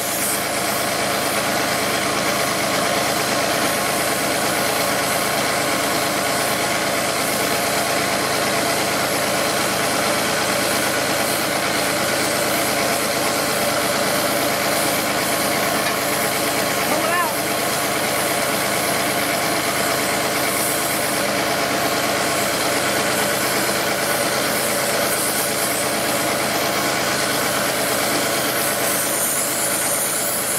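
An engine idles steadily under the steady rush of a gas torch heating a steel loader-arm pivot.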